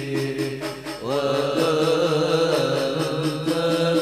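A group of men chanting an Islamic qasidah together in unison, with a brief dip in the voices about a second in before the next phrase rises in.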